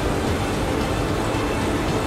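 Steady background noise in a hall: an even rumble and hiss with no distinct events.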